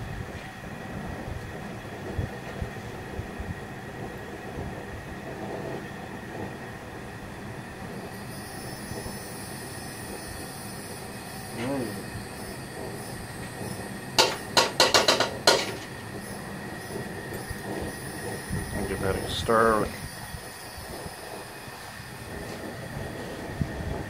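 Steady noise from a propane burner heating a cast-iron skillet of molten lead. About a third of the way in, a high hiss joins it as flux is added to the melt and starts to smoke. About two-thirds through come a short run of sharp metallic squeals, with another brief scrape a few seconds later.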